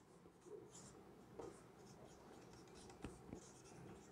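Faint marker strokes on a whiteboard as a word is written by hand, a few short scratches with two sharper ticks about three seconds in.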